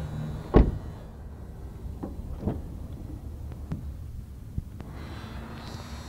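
A car door of a Honda sedan thumps shut about half a second in, followed by a few light clicks of door handle and latch as the rear door is opened.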